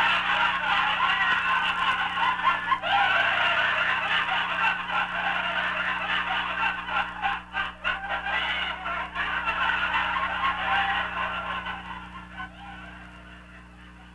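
A dense chorus of overlapping clucking, fowl-like calls over a steady low hum, fading away over the last couple of seconds.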